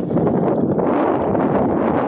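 Steady, loud wind buffeting the microphone.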